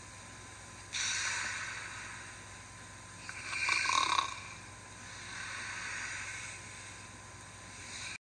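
Breathy, hissing breath sounds that swell and fade three times, loudest about four seconds in, over a faint steady hum.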